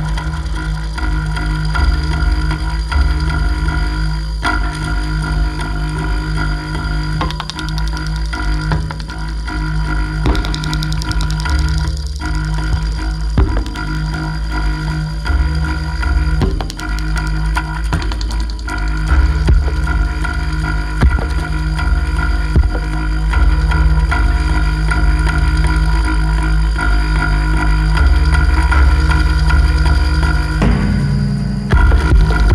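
Live homemade electronic techno: a steady bass pulse under held droning tones, with scattered sharp clicks. It is played on DIY electroacoustic instruments.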